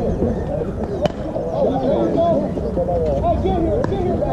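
Many voices of players and onlookers talking and calling out, with one sharp crack about a second in: a softball bat hitting the ball.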